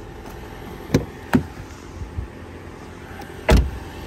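Light knocks and a thump of a parked car being handled: two short knocks about a second in, then a heavier, louder thump near the end, over a steady low hum.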